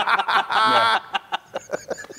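Men laughing: a loud burst of laughter about half a second in, followed by short, fading bursts of chuckling.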